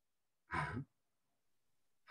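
A man's single short, audible breath, about half a second in, lasting about a third of a second.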